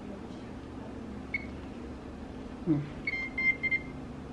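Cordless phone handset beeping: one short high beep about a second in, then a quick run of about four short beeps near the end. A brief vocal sound comes just before the run of beeps.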